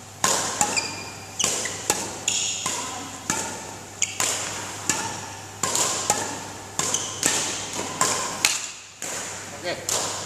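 Badminton racket strikes on shuttlecocks in a rapid hitting drill, sharp hits about one to two a second, echoing in a large hall. Short shoe squeaks on the court floor come between the hits.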